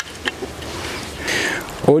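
A long-handled sow-tooth cultivator scraping and pushing loose garden soil back over a sown seed furrow to close the row. There are a few soft clicks of clods at first, and the scraping grows loudest a little past the middle.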